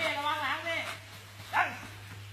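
A dog whining in a wavering pitch for about a second, then a short yelp that falls sharply in pitch about a second and a half in.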